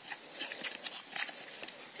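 Wooden paddle of a rubber-band-powered toy boat being turned by hand to wind up its elastic band: quiet, irregular small clicks and rubbing of wood and rubber under the fingers.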